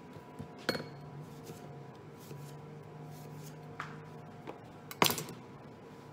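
Kitchen knife and dishware knocking and clinking on a cutting board: a sharp knock under a second in, a couple of lighter ones later, and the loudest with a short ring about five seconds in, over a steady low hum.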